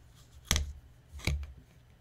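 Two sharp taps, the first a little louder, as a clear acrylic ruler is set down and positioned on a chipboard panel lying on a cutting mat.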